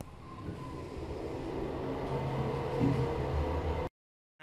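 Elevator car in motion: a steady low rumble and hum that grows gradually louder, then cuts off suddenly near the end.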